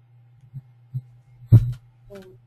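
A steady low electrical hum on the audio line, with a couple of soft thumps and a louder, sharper thump about one and a half seconds in.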